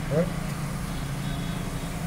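Steady low hum of a motor vehicle engine running, over general street noise.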